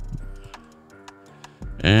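Soft background music of sustained chords, with a few light clicks from a computer mouse and keyboard; a man's voice starts near the end.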